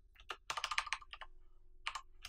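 Computer keyboard being typed on: a fast run of key clicks about half a second in, with single key presses before and near the end.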